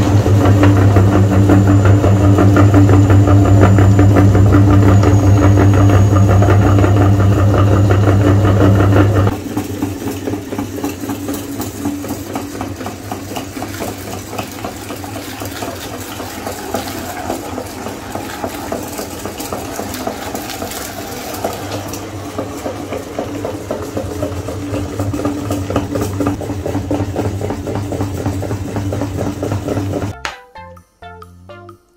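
Motor-driven meat grinder running with a loud steady hum while it crunches small plastic toys. About nine seconds in the hum drops away abruptly, and a quieter, rapid crackling and clicking grind carries on, growing louder again near the end.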